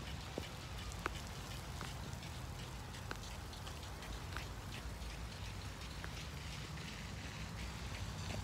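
Spray from a sprinkler falling on the leaves of a tree as a faint, steady patter, with scattered ticks of single drops.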